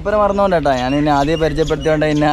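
A man speaking continuously, close to the microphone.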